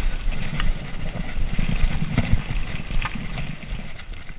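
Mountain bike riding on a dirt forest trail, heard through an on-board camera's microphone: an uneven low rumble of wind and tyres, with irregular clicks and rattles from the bike over bumps, fading away near the end.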